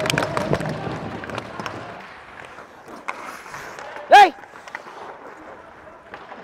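Ice hockey play: sticks clacking and skates scraping on the ice at a faceoff, with arena noise, then a single short, loud shout about four seconds in.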